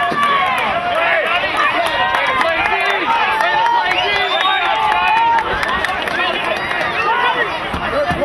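Many voices shouting and calling out over one another at a lacrosse game, with no single clear word standing out.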